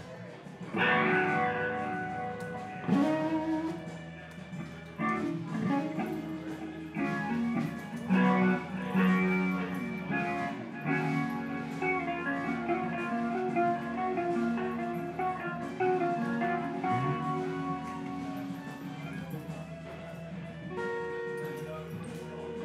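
Electric guitars and a bass guitar played loosely through amplifiers while warming up before a set: held chords and single notes, with a bass note sliding up a few seconds in and again later.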